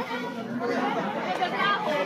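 Chatter of a group of students, several voices talking over one another.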